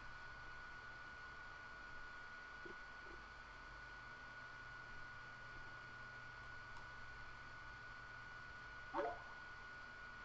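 Quiet room tone with a faint steady high-pitched whine and a low hum. About nine seconds in there is one short rising voice-like sound.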